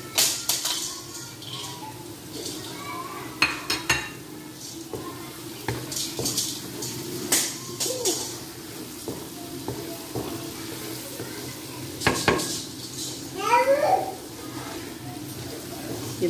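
A spatula scraping and knocking against an aluminium karahi as potatoes, onions and green chillies are stirred in oil, in irregular clatters, the loudest about 12 seconds in.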